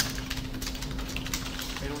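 Rapid, irregular keystrokes on a computer keyboard as a line of code is typed.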